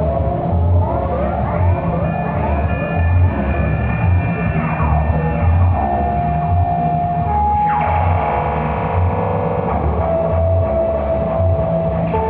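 Live electric guitar playing sliding, bending lines over a programmed electronic beat with an evenly pulsing bass. About two-thirds of the way through, a dense shimmering chord swells up for a couple of seconds.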